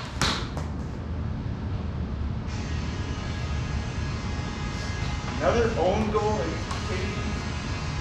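Floor hockey being played on a concrete floor: sharp clacks of sticks striking the ball and floor just after the start and again around seven seconds in. A voice calls out briefly about five and a half seconds in, over a steady low rumble.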